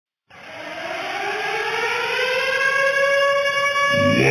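A siren winding up: one tone starts a moment in, rises in pitch as it grows louder for about two and a half seconds, then holds steady.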